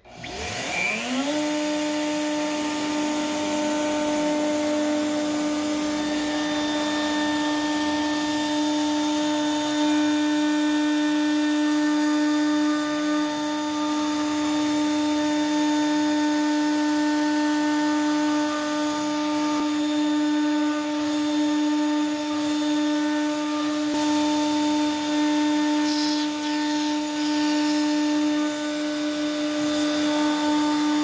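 Stepcraft M.1000 CNC router spindle spinning up over about a second to a steady whine as the job starts, with the dust-extraction vacuum kicking in alongside and running steadily as the bit mills the sheet stock.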